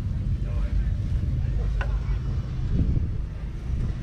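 1969 Massey Ferguson 135's 2.5-litre three-cylinder diesel engine (Perkins) running with a steady low drone, with wind buffeting the microphone.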